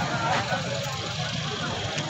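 Street ambience: background chatter from a crowd over a steady rumble of road traffic.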